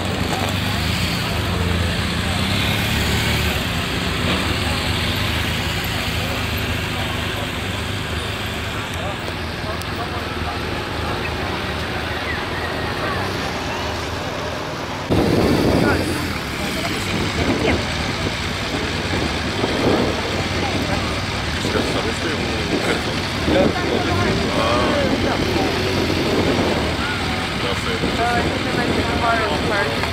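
BMW police motorcycles running at low speed as a line of escort bikes passes, with crowd chatter behind. About halfway through the sound cuts to louder crowd voices and talk, with a motorcycle idling nearby.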